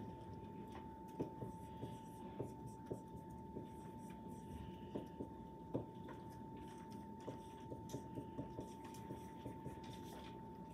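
Dry-erase marker writing on a whiteboard: short, irregular taps and strokes as the numbers of an equation are written out. A faint, steady high tone runs underneath.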